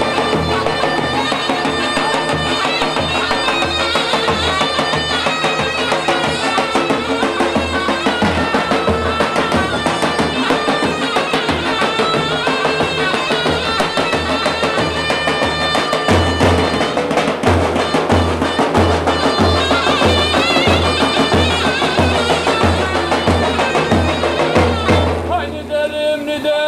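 Davul and zurna playing a Turkish folk tune: a shrill reed melody over the regular deep beat of large bass drums. The drumbeats get noticeably heavier about two-thirds of the way through.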